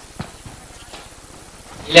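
Chalk tapping and scraping on a blackboard as a number is written: a sharp tap about a fifth of a second in, then a few faint strokes over quiet room tone. A man's voice starts right at the end.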